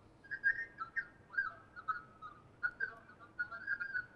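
Warbling, whistle-like chirps and squeals on a phone-in line, coming in short bursts several times a second. This is audio feedback from the caller's television playing the broadcast near his phone.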